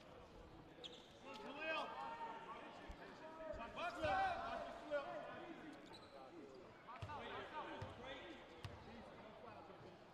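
A basketball bounced a few times on a hardwood court in a free-throw shooter's pre-shot routine, with faint voices in the gym behind it.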